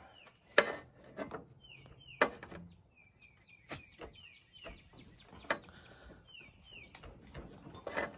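Oil filter pliers clicking and scraping against an over-tight spin-on oil filter as they are fitted and worked on it, with several sharp metallic knocks. A bird chirps repeatedly in the background.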